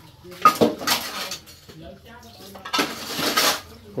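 Ceramic plates and metal spoons clinking and clattering as washing-up is gathered and food scraped off a plate. A sharp clink about half a second in is the loudest sound, and a longer scrape follows near the end.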